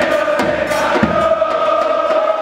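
Crowd of football supporters singing a chant together in unison, many voices on held notes, with a low thump about halfway through.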